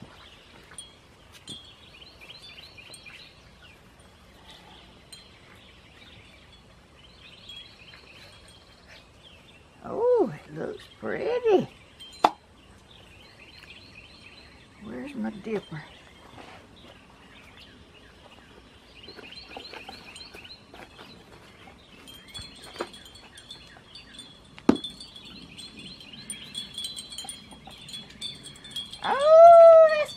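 Wind chimes tinkling lightly on and off in the breeze, with a few sharp knocks and short wordless vocal sounds, the loudest about ten seconds in and at the very end.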